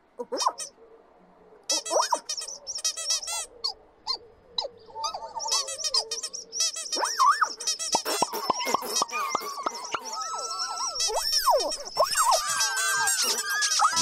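The Pontipines' high squeaky chattering: many tiny voices twittering over one another. It is quiet for the first second or so, then the chatter grows busier and louder, and lower sliding squeaks join in about halfway through.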